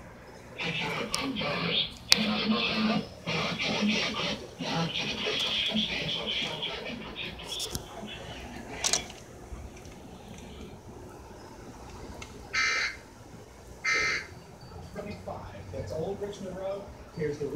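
Voices with faint music underneath. The talk comes in stretches for the first several seconds and then goes quieter; two short high-pitched sounds come near the end.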